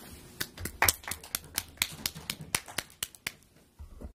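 Brief applause from a small audience: sharp, separate claps at about four a second, stopping about three seconds in.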